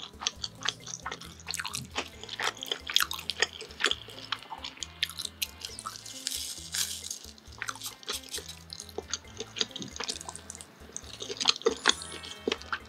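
Close-miked chewing of chewy food, with many wet mouth clicks throughout. About six seconds in, a brief papery rustle as a small packet is torn open.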